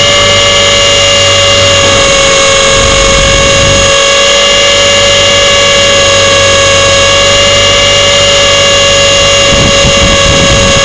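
Radio-controlled helicopter in flight, heard from a camera mounted on the helicopter itself: a loud, steady whine from the motor, drive gears and rotor, holding an almost constant pitch, with some low rumbling that comes and goes.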